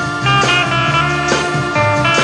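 A classic Malay pop band recording playing, led by electric guitar over drum hits and bass.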